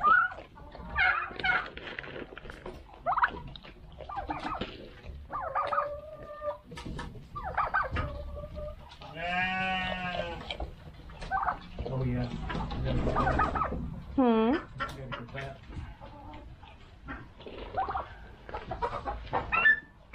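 Goats bleating and turkeys clucking, a run of separate calls with one long wavering call about halfway through.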